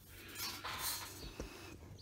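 Faint rustling of hands handling things on a workbench, with one light click about one and a half seconds in.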